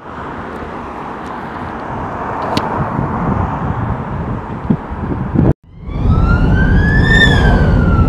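Steady outdoor noise of wind and traffic, cut off abruptly about five and a half seconds in. Then, over the low rumble of a car on the road, a siren wail rises once in pitch and falls again.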